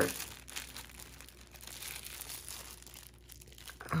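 Thin plastic wrapping crinkling as hands handle and fold it. The crinkles are loudest in the first second and fainter after.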